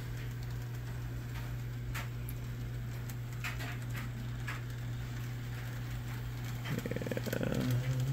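Model train running on its track: a steady low hum with a few faint clicks.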